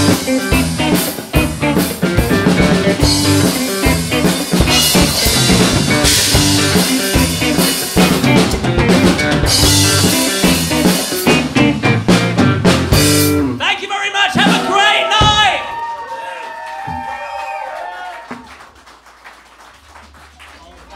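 Live rock band playing loud with a drum kit, cymbals and electric guitars. The full band stops about two-thirds of the way in, leaving quieter pitched sounds that fade away.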